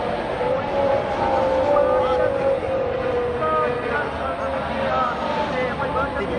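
Formula One car's engine note, a steady tone that slowly falls in pitch, with a circuit public-address commentator talking over it.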